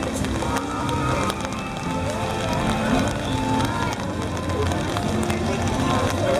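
Outdoor crowd ambience: people talking around the camera over background music, with scattered ticks and steps.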